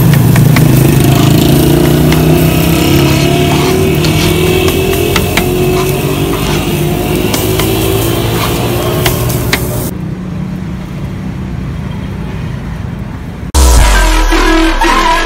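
A metal scraper clicking and scraping on a flat iron griddle as shawarma chicken and vegetables are chopped and mixed, over a steady low engine hum. Just before the end, loud electronic music cuts in.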